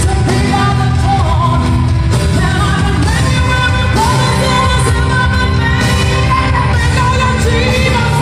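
Live pop-rock performance: a singer singing into a microphone over a full band. It is loud and steady, heard from among the audience in a large arena.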